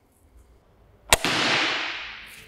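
A compound crossbow shot: one sharp crack about a second in as the bolt is loosed and strikes the target, followed by a noisy wash that echoes and fades through the large hall over about a second.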